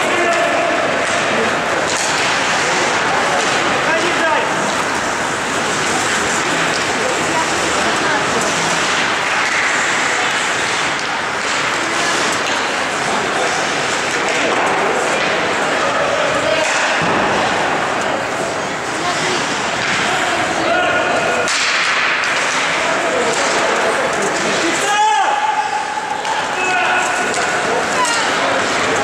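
Live ice hockey play in a rink: skates scraping the ice, sticks and puck knocking, and players shouting to one another.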